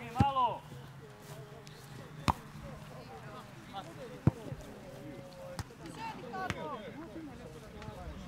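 A football being kicked: two sharp thuds about two seconds apart, and a few fainter knocks later, mixed with players' shouts on the pitch, one loud shout right at the start.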